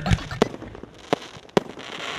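Aerial fireworks bursting overhead: four sharp bangs at uneven spacing, the loudest near the end.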